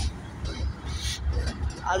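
Low, uneven rumble of BNSF GE C44-9W diesel-electric locomotives rolling slowly past at close range.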